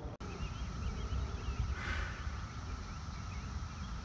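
Outdoor ambience: a low wind rumble on the microphone, with faint bird chirps throughout and a short soft hiss about halfway through.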